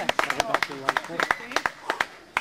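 Voices calling on a beach football pitch, faint, with about a dozen irregular sharp knocks scattered through.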